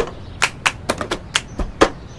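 Cup-game percussion: a rhythmic run of sharp taps and claps, cups knocked and slapped on a table together with hand claps, about four strikes a second in an uneven pattern.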